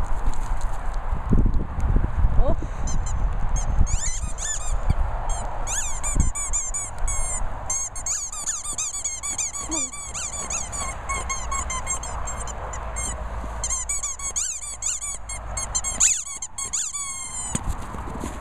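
A dog's squeaky rubber toy being chewed, giving rapid runs of short high squeaks in bursts that start about four seconds in and go on almost to the end.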